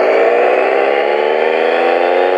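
An added closing sound effect: one sustained pitched tone with many overtones, slowly rising in pitch.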